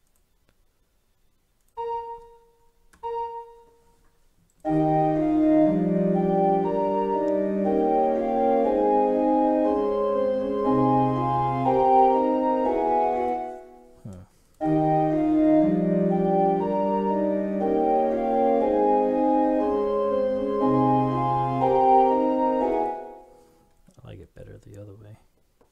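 Computer MIDI playback of a fugue passage in several voices on a synthesized pipe-organ sound, checking a minor-second clash between the upper voices. Two single notes sound briefly, then the passage plays for about nine seconds, stops, and plays through again.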